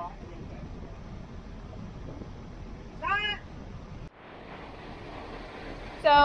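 A cat meows once about three seconds in, a short call that rises and falls in pitch, over steady background noise.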